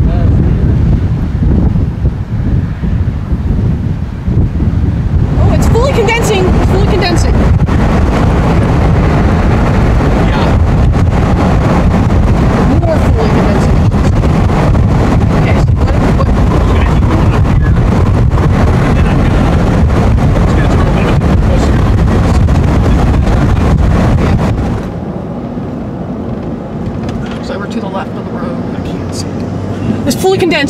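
Loud, steady low rumble of wind buffeting the microphone and a car driving on the road, heard inside the moving car. It drops sharply to a lower level about 25 seconds in.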